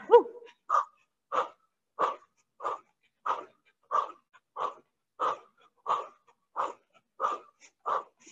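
A woman breathing hard and fast during a cardio dance exercise: short sharp exhales, about three every two seconds, in an even rhythm.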